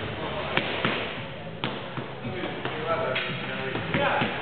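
Punches landing on a stack of rubber tyres, about half a dozen sharp thuds at an uneven pace, with voices and music in the background.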